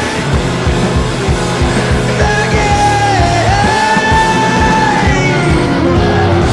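Rock music with a singer holding long, high notes over drums keeping a steady beat and a bass line.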